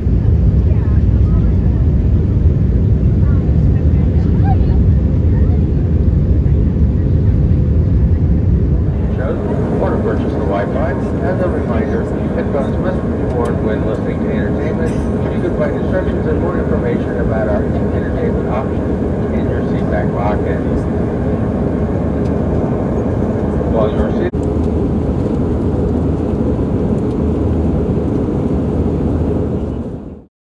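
Airliner cabin noise aboard an Airbus A319 in flight: a loud, steady low rumble of engines and airflow. About nine seconds in the recording cuts to another stretch of cabin noise, with indistinct voices over the rumble.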